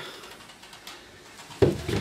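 Low, even background hiss, then a single sudden thump about three-quarters of the way through. The outboard is not yet running.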